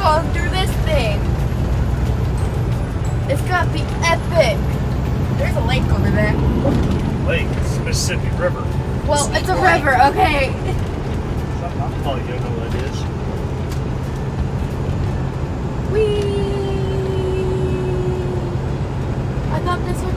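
Steady low drone of a semi truck's engine and road noise heard inside the cab, with brief indistinct voices. A held tone slowly falling in pitch comes in near the end.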